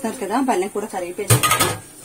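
A metal pot lid clanks once against metal cookware about a second and a half in, with a short ring after the hit.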